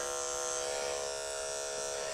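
Electric dog-grooming clipper running with a steady buzz as it clips matted fur from between a dog's paw pads.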